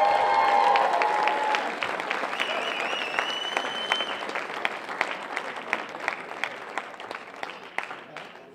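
Audience applauding and cheering at the end of a live rock song. The clapping is loudest at first and slowly dies away, with a high shrill whistle a few seconds in.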